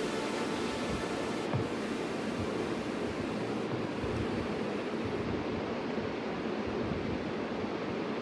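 Steady rushing background noise with no distinct events; the hiss in the upper range thins out about halfway through.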